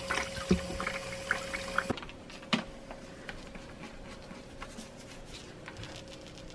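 Water pouring from a fill-station tap into a spray bottle held in a bucket, filling it to dilute degreaser, with a faint steady hum. The pour stops about two seconds in, followed by a sharp click and faint handling ticks from the bottle.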